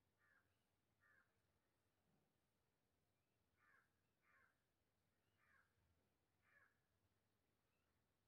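Near silence, with six faint short calls from a bird in the background, spaced about a second apart.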